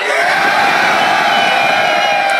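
Club crowd shouting together in one long, loud, held yell.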